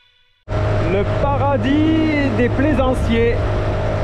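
A small boat's outboard motor running steadily, starting abruptly about half a second in, with a person's voice over it.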